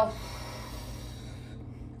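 A woman's deep, slow exhale, a soft breathy hiss that fades out about a second and a half in, over a steady low hum.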